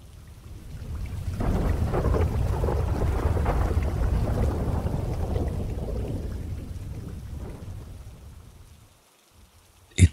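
Rain with a long rumble of thunder that swells over the first couple of seconds, rolls on, then fades away shortly before the end.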